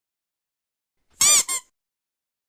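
Two high-pitched squeaks about a second in: the first longer, its pitch arching up and then down, the second short.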